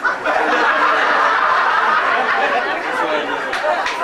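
A seated audience laughing and chattering, many voices overlapping at once.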